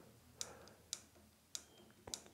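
Three sharp clicks about half a second apart, a finger pressing the button on a Sigma EOX e-bike handlebar remote to page through the display's info screens.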